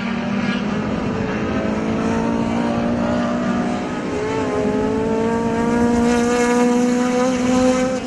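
Touring race car engines held at high revs on the circuit, a steady engine note that climbs slowly, sags briefly about halfway, then climbs again.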